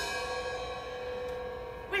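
Suspended cymbal struck once with a drumstick, then left ringing with a shimmering, slowly fading sustain.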